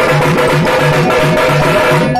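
Tamate frame drums and a large bass drum beaten with sticks together in a fast, steady rhythm.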